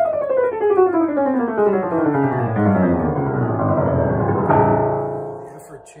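A 7-foot-6 1898 Steinway model C grand piano, freshly rehammered and regulated, played in a long, even run descending from the treble down into the bass. A chord is struck about four and a half seconds in and rings away.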